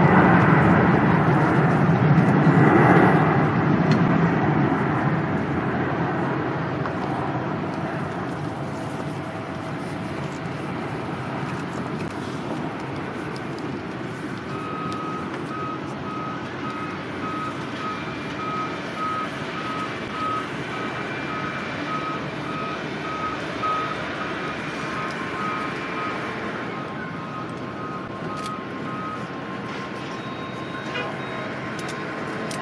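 Steady airport apron noise, loudest in the first few seconds and then settling lower. From about halfway through, a ground vehicle's reversing beeper sounds about twice a second until near the end.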